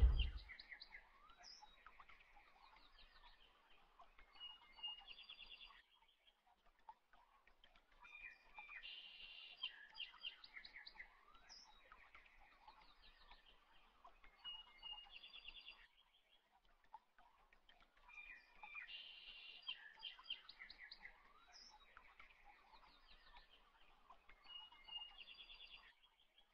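Faint birdsong: a sequence of chirps and trills that repeats the same way about every ten seconds.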